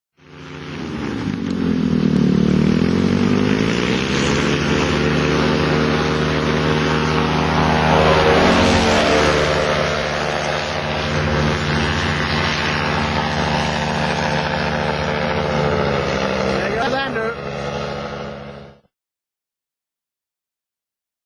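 Paramotor engine running in flight, a steady drone whose pitch dips and rises again in the first few seconds, with another engine tone sweeping down and back up about eight seconds in. The sound cuts off suddenly near the end.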